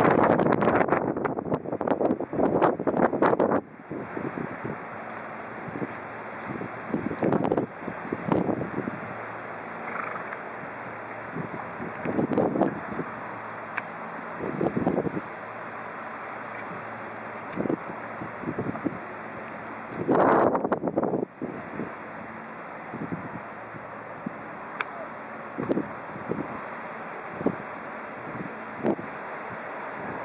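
Wind buffeting the microphone in irregular gusts, heaviest in the first few seconds and again about two-thirds of the way through.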